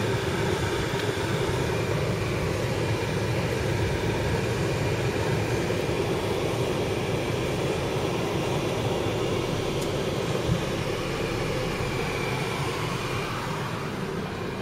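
Steady engine and tyre noise of a car driving slowly, heard from inside the cabin.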